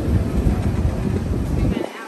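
Hersheypark monorail in motion: a loud, uneven low rumble of the ride mixed with air buffeting the microphone, which drops away abruptly near the end.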